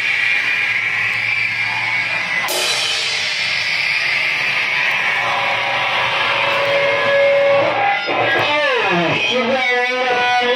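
Loud noise-rock playing: heavily distorted electric guitar over drums, making a dense wall of noise, with a cymbal crash about two and a half seconds in. Near the end the noise turns into falling pitch sweeps and then a wavering, sustained squeal.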